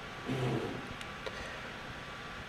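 Quiet room tone: a steady low hiss, with one brief low hum-like sound just after the start and a couple of faint clicks about a second in.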